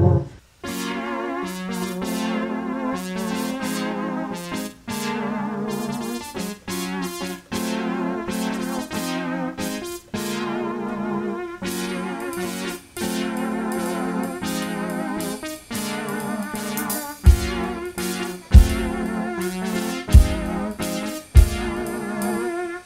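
Electric keyboard playing a slow song in sustained chords, re-struck steadily. From about 17 seconds in, deep heavy thumps join, about one every second and a half.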